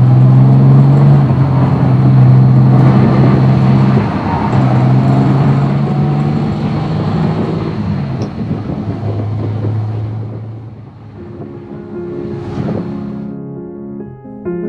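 Jaguar E-Type's 3.8-litre straight-six running under way, heard from inside the open cabin with tyre and road noise. Its steady note breaks off about four seconds in and comes back lower after about nine seconds, as with gear changes. It fades near the end as piano music comes in.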